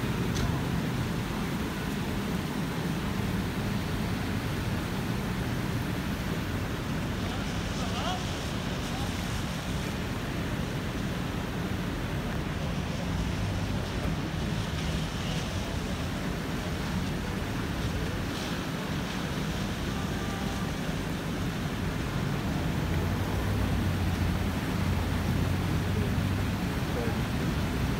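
Steady low rumble and wash of outdoor noise: wind on the microphone over idling emergency vehicles and traffic on a wet street, with no sudden events.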